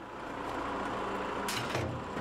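A steady, low engine hum, with a short hiss about one and a half seconds in.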